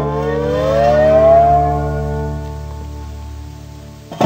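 Blues guitar music ending on a held chord, one note bending slowly upward in pitch over the first second and a half, then ringing out and fading away.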